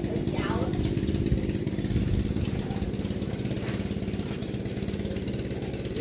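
A small engine running steadily at an even speed, with people's voices over it.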